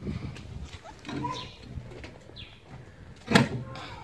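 Birds calling faintly in the background, with one short, loud sound about three seconds in.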